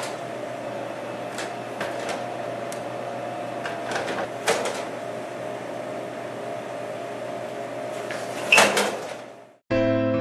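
Steady electrical hum of a vending machine with scattered clicks and knocks, and one loud knock near the end. The sound then cuts off suddenly and slow electric piano music begins.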